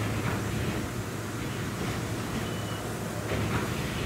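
A steady low mechanical hum with a faint hiss from the organ's machinery in the swell chamber, with two brief faint high whistles.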